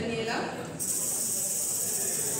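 A voice ends a short phrase, then a long steady hiss starts about three-quarters of a second in.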